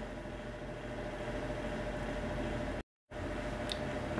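Steady room tone with a faint steady hum and no distinct events, cut off to total silence for a fraction of a second just before three seconds in.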